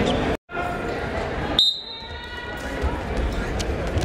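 Thuds of wrestlers' bodies and feet on a gym wrestling mat, echoing in a large hall. About a second and a half in there is a sharp hit followed by a high ringing tone that fades away.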